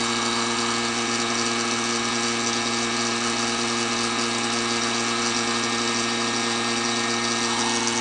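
A vacuum pump and a heat gun running together, a steady hum under an even blowing hiss. The pump holds suction under the heated plastic sheet, drawing it down over the mould.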